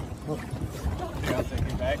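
Indistinct voices of people on a small boat, over a steady low wash of sea water and wind.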